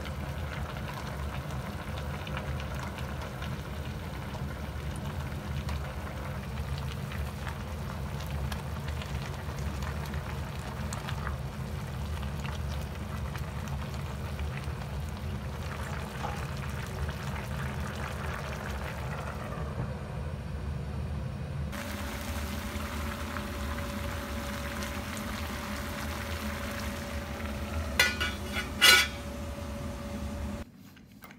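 A pot of braised chicken and vegetables simmering on a gas stove: a steady bubbling with a low burner rumble beneath it. Near the end come two sharp metal clanks that ring briefly.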